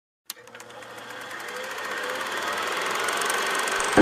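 A click, then a rapid rattling, buzzing noise that swells steadily louder for about three and a half seconds, building up into the podcast's intro music.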